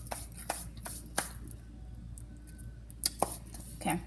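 Hand handling noise: a handful of short, sharp taps and knocks, spread out, with two close together about three seconds in.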